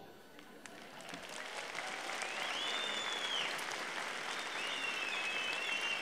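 Audience applause swelling in over the first couple of seconds and holding steady, with a few high whistles over it.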